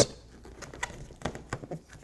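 Rubber balloon necks rubbing and squeaking softly as one stretched neck is twisted around another, with a few small irregular clicks.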